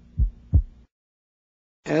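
Stethoscope recording of a normal adolescent heart over the second intercostal space: one beat, S1 then S2, two short low thumps about a third of a second apart, over a faint steady hum. It is heard during expiration, when the A2 and P2 parts of the second sound lie close together. The recording then cuts off suddenly into silence.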